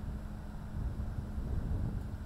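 Steady low rumble of a ship's engine, with wind buffeting the microphone.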